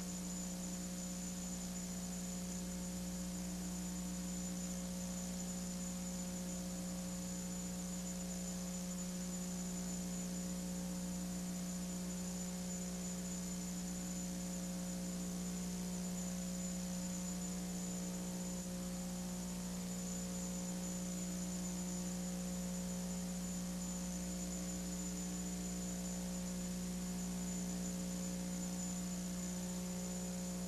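Steady electrical mains hum with a faint hiss underneath, at an unchanging level.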